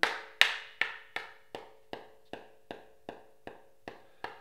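A berimbau baqueta, a thin wooden stick, tapping a hand-held block in a steady beat of eleven light taps, about two and a half a second. The first two taps are the loudest and the rest are softer and even.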